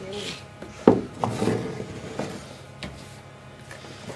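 A large plastic tub set down on a wooden worktable with a sharp knock about a second in, followed by a few lighter knocks and rubbing as containers are handled in it.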